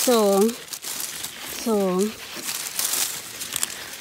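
Dry fallen leaves and moss crackling and rustling as a gloved hand digs at the forest floor and pulls out a pair of scaber-stalk boletes.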